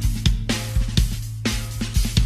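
Instrumental break in a karaoke backing track: a drum beat with regular hits over a steady bass line, with no singing.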